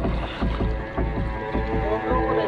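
Small boat's engine running with a steady, rapid low putter of about five beats a second.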